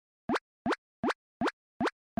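Cartoon pop sound effects: five short pops in a row, evenly spaced a little under half a second apart, each rising quickly in pitch.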